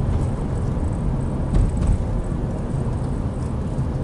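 Steady low rumble of engine and road noise heard inside the cabin of a Toyota Isis 2.0 driving slowly in traffic.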